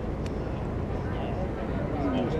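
Steady low outdoor city rumble, with one faint click a quarter of a second in.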